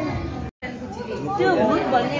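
Chatter of several voices in a dining room, broken by a split second of silence about half a second in. The voices are louder after the break.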